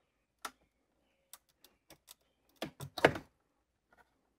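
Plastic wiring connectors on a car radio unit clicking as their locking tabs are pulled out and pressed down and the plugs are unplugged: a scattering of short, sharp clicks, the loudest few about three seconds in.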